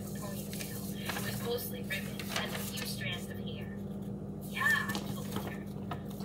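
Faint, low speech over a steady low hum, with soft scratching strokes of a marker drawing on paper.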